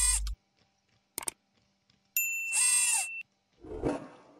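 An on-screen button sound effect: a brief click about a second in, then a bright bell-like ding ringing for about a second, followed by a short soft rustle near the end.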